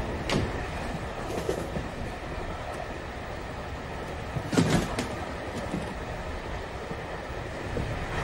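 Steady low rumble of a railway passenger carriage, with a brief clatter about four and a half seconds in.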